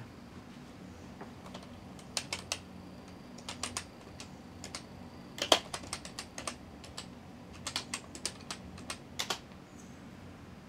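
Typing on a computer keyboard: short, irregular runs of keystrokes with pauses between, the loudest strike about halfway through, over a faint steady low hum.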